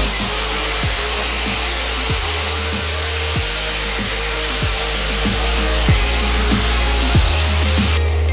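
Electric angle grinder with a wire cup brush running against a steel flat bar, a steady hissing whine as it strips off flaking old paint. Background music with a steady beat plays over it.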